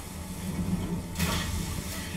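TV episode soundtrack: a steady low rumble, then a thud with a burst of noise lasting most of a second, a little past the middle, as a small boat is jolted among ice.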